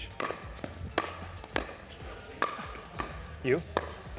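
Pickleball rally with 60-grit-sandpaper-faced paddles: a string of sharp pops from paddle hits and ball bounces, roughly a second apart.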